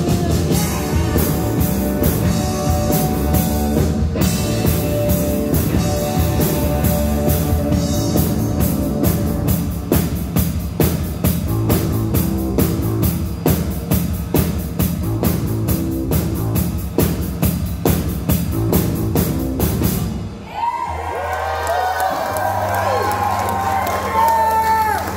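Live rock band with electric guitars, bass and a drum kit playing a fast, driving song. About twenty seconds in the song stops abruptly, leaving sustained ringing tones and wavering whoops from the audience.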